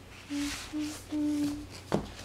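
A person humming a short wordless tune of three notes at the same pitch, the last held longest. A sharp click comes near the end.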